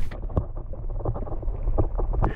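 Muffled underwater sound of stirred water heard through a submerged camera: a low rumble with a few faint knocks, the higher sounds cut off.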